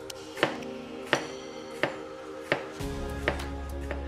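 Chef's knife slicing bitter gourd thinly on a wooden cutting board: five sharp chops at an even pace, each cut ending with the blade striking the board.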